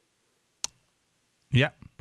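A single short, sharp click in an otherwise silent pause, followed near the end by a man saying "Yeah."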